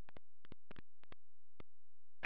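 A steady low hum with about nine faint clicks scattered through it.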